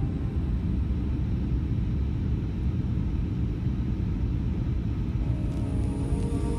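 Steady low rumble of an Airbus A320neo airliner heard from inside the cabin in flight on descent: engine and airflow noise. Music comes back in near the end.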